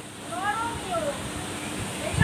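Wind blowing, heard as a steady rush on the microphone, with a faint high call that rises and falls about half a second in.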